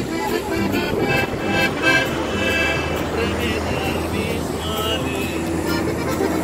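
Live norteño music between sung verses: a button accordion carrying the melody over strummed acoustic guitar and a bass line.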